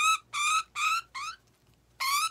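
Budgerigar held in the hand squawking repeatedly: four short harsh calls about three a second, the last rising in pitch, then a pause near the end. These are the protest calls of a restrained bird.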